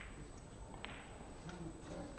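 Quiet hall room tone with two faint, sharp clicks, one at the start and one just under a second in, like snooker balls striking on another table.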